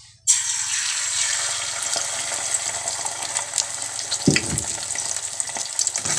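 Beaten eggs poured into a hot steel pan, sizzling loudly as they hit the metal a moment in and then frying steadily with crackles. A brief low thud about four seconds in.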